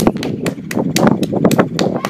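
Irregular sharp clicks and knocks, several a second, over a low rumbling noise.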